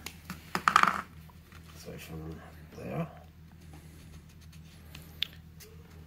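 Brief low voice sounds in the first half, then small clicks and rustles of hands handling a paper strip and a marker on cardboard, with one sharp click near the end.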